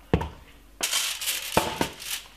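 A knock right at the start, then aluminium foil crinkling and rustling as it is handled, with another knock about a second and a half in.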